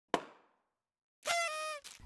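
Logo-intro sound effect: one sharp knock that dies away over about a third of a second, then, about a second later, a brief pitched tone that sags slightly in pitch.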